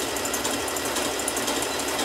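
Janome computerized sewing machine running steadily at speed, a fast even patter of needle strokes as it sews a dense fringe stitch with the fringe foot.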